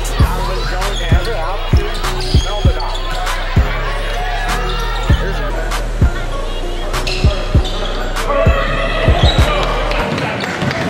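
Basketball dribbled on a hardwood gym floor: short, low thumps about once a second, irregularly spaced, over a steady background of voices and a low hum.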